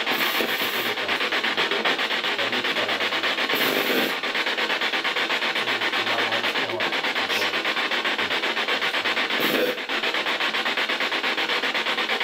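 A continuous rasping noise with a fast, even flutter.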